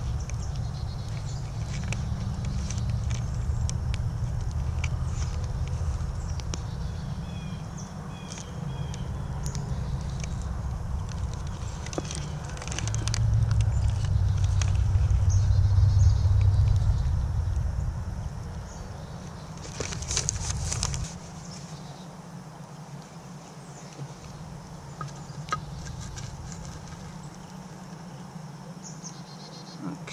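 Outdoor ambience beside a wood campfire: scattered small crackles and clicks over a steady low rumble. The rumble swells past the middle and drops away about two-thirds of the way in, just after a brief rustle.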